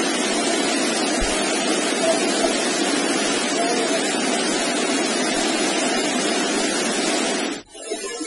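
Steady, loud hiss and static from a raw voice-recorder file, with a denser murmur in its lower range; it cuts off abruptly shortly before the end.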